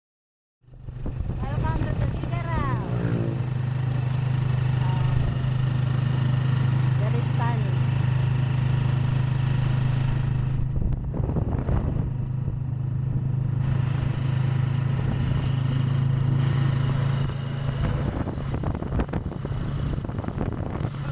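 Motorcycle engine of a tricycle running steadily under way, heard from inside its sidecar, a low steady drone with road and wind noise; it starts about half a second in.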